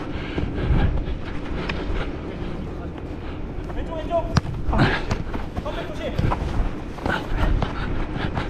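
Running footsteps on artificial turf and wind rumble on a body-worn camera's microphone. There is a sharp knock of a foot striking a futsal ball about four and a half seconds in, with brief shouts from players around it.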